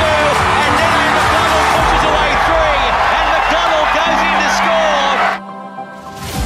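Stadium crowd cheering loudly, mixed with a match commentator's voice and background music; the crowd noise cuts off abruptly about five seconds in, leaving quieter music.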